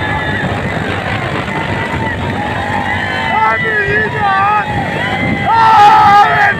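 Motorcycle engines running at speed under a rumble of wind on the microphone, with men shouting over them; the shouts grow louder in the second half.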